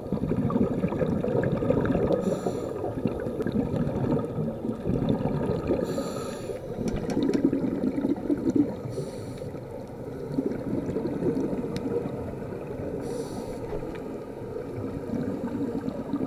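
Muffled underwater noise picked up through a camera's waterproof housing, with a scuba diver's regulator exhaling bubbles in short bursts about every three to four seconds.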